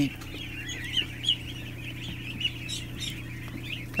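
Many ducklings and goslings peeping together, a dense chatter of short high peeps, over a steady low hum.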